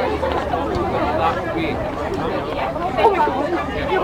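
A close crowd of fans chattering, many voices talking over one another with no single speaker standing out, over a low steady hum.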